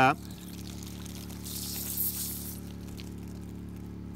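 Star San sanitizer spraying out of a pulled maple sap tap as a transfer pump pushes it backward through the tubing. The liquid gives a hissing spurt for about a second in the middle, over a steady low hum.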